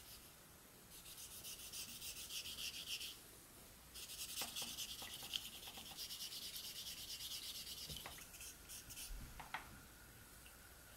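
Wet sanding a wooden ruler with sandpaper under water: quick back-and-forth scratchy rubbing strokes in two spells, about two seconds and then about four seconds, with a short pause between. A couple of light knocks follow near the end.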